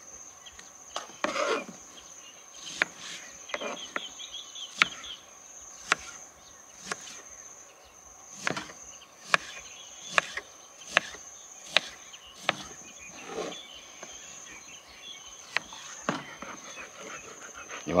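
A knife slicing dragon fruit on a plastic cutting board: sharp clicks of the blade striking the board, irregular and about one a second. A steady high insect drone runs behind.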